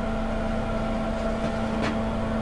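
Steady mechanical hum of a running motor in the room, with a constant low tone.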